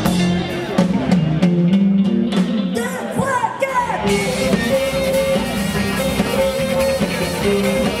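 Celtic folk-rock band playing live: drum kit and bass for the first few seconds, then about four seconds in the music changes to a fuller passage with guitar and held flute notes.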